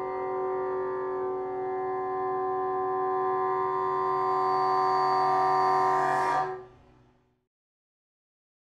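A solo bassoon holds one long, steady note that swells slightly toward the end, then stops about six and a half seconds in with a brief decay: the closing note of a movement.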